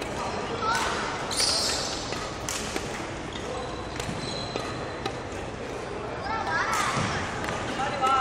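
Badminton shoes thudding and squeaking on a wooden court floor during quick footwork: a series of sharp steps with a few short squeaks.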